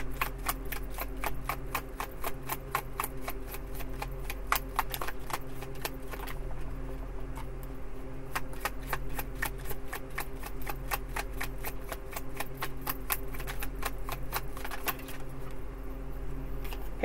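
A tarot deck being shuffled in the hands: a steady run of light card clicks, about three or four a second, thinning briefly about six seconds in, over a steady low hum.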